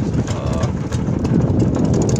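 The engine of a motorized outrigger fishing boat (bangka) running steadily under way, a continuous low rumble.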